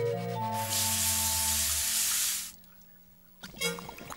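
Cartoon background music, with a hiss of running water from a salon sink's hand sprayer for about two seconds, cutting off suddenly. A few short wet clicks follow near the end.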